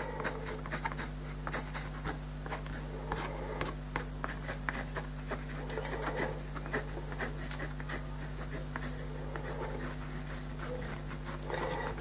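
Knitting needle tip tapping and scratching on wet watercolour paper in quick, irregular little ticks as it drags paint out into fine strokes, over a steady low electrical hum.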